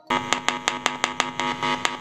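Homemade mini speaker letting out a loud steady buzz, broken by sharp regular clicks about five or six a second, with its 3.5 mm audio plug pulled out. The buzz starts abruptly.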